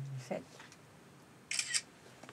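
A camera shutter sound, a short two-part click, about a second and a half in, following the count of three for a photo.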